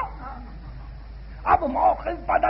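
Old reel-tape lecture recording in a pause: steady tape hiss with a low hum, then a man's voice breaks in again about a second and a half in.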